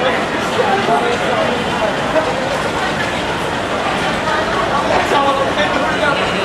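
Voices talking and calling on a busy station platform, over the steady rolling noise of passenger train coaches moving slowly past.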